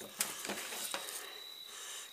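Knife slicing and scraping through a white perch fillet on a plastic cutting board, faint, with one sharp tap just after the start.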